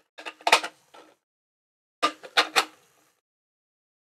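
Hard plastic 3D-printed dumbbell parts knocking and clicking together as they are handled, in two short clusters of clatter: one just after the start and another about two seconds in.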